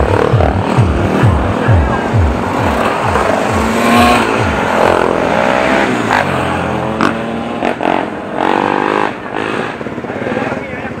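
Dirt bike engines revving as the bikes ride past one after another, over electronic music with a steady bass beat that stops about six seconds in.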